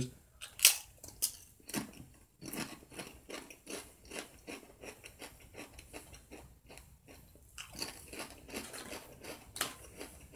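A person biting and chewing crisp tortilla chips: a quick run of crunches, sharpest in the first two seconds and again near the end.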